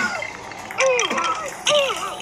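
A sharp hit at the start, followed by two short, high-pitched cartoon cries, each falling in pitch: one about a second in, the other near the end.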